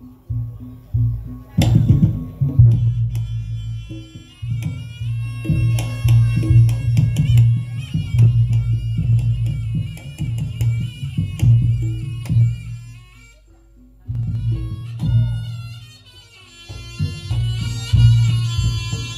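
Reog Ponorogo gamelan accompaniment: kendang drum strokes and a deep steady bass under a reedy slompret shawm melody that steps between notes. The music drops away briefly about two-thirds of the way through, then picks up again.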